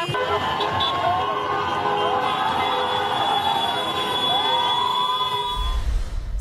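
Car horns held and sounding over one another in slow street traffic, mixed with a shouting, cheering crowd whose calls rise and fall.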